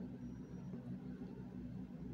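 Faint background room noise: a steady low hum with a light hiss.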